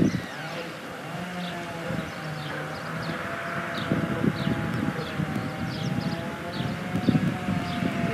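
A steady drone of several held tones, wavering slightly in pitch, with short falling high chirps of small birds repeating over it and a light rustle underneath.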